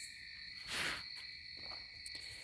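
A short breath drawn in about a second in, over a faint, steady high-pitched whine that runs throughout.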